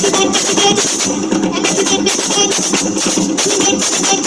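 Live hand drumming with shaker-like rattling, a steady quick beat accompanying a folk dance.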